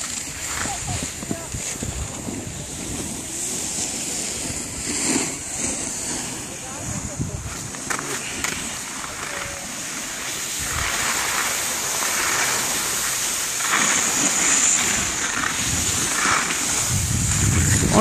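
Skis sliding and scraping over packed snow on a downhill run: a continuous uneven hiss with irregular low rumbles.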